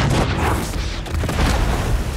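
A heavy boom of a warship's gun firing, starting suddenly and trailing off into a long rough rumble.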